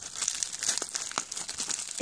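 Plastic packaging crinkling and rustling as a package is unwrapped by hand, with irregular small crackles.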